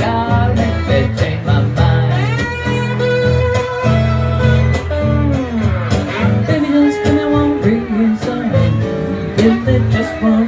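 Live acoustic blues: a slide guitar lead with gliding notes over a strummed acoustic rhythm guitar.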